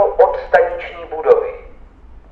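Automated Czech station announcement from the HIS passenger information system: a recorded male voice over the public-address loudspeakers finishes the announcement with the track number, "na kolej číslo 2" (to track number 2), and stops about a second and a half in.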